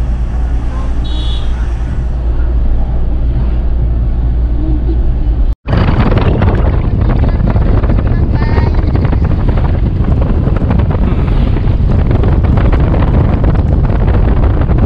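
Car driving along a road: a steady low rumble of engine and road noise. After a sudden break about five and a half seconds in, loud, rough wind buffeting on the microphone rides over the road noise.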